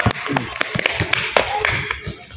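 Basketball bouncing on a concrete court as it is dribbled, a run of sharp knocks, several a second.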